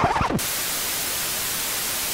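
Television static: a steady, even white-noise hiss that cuts in suddenly about half a second in, replacing the music.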